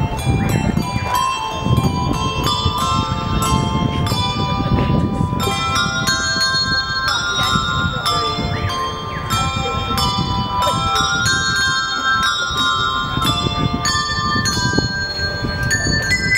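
A handbell ensemble playing: many tuned handbells rung in quick succession, their notes overlapping and ringing on, often several at once as chords.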